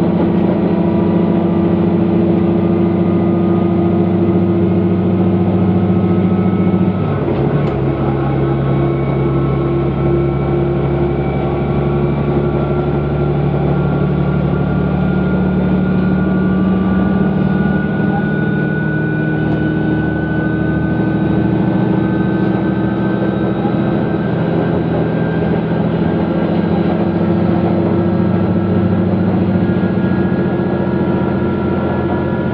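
Diesel railcar running, heard from inside the passenger cabin with a steady engine drone. About seven seconds in the engine note changes and drops a little, then climbs slowly as the train gathers speed.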